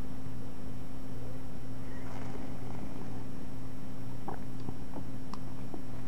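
Steady low electrical hum with no speech, and a few faint light clicks near the end from a metal fork touching a plate.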